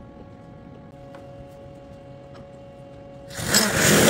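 Steady low hum of a machine shop, with a faint tick about a second in. Near the end, a loud hissing rush of noise lasting just under a second.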